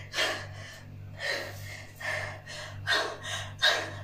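A woman gasping in short breathy puffs, six or seven of them, as she strains to crush a watermelon between her thighs.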